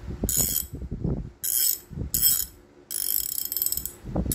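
TONE 1/2-inch (12.7 mm) coarse-tooth ratchet handle clicking as its head is turned back and forth, in four quick runs of clicks. The reversing lever has just been flipped, and the pawl is working in the reversed direction.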